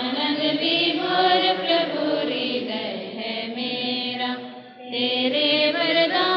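Many voices singing a devotional song together in long, held phrases. The singing dips briefly just before five seconds in, then the next line starts.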